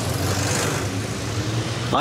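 Steady street traffic: cars driving past, a continuous engine drone with tyre and road noise.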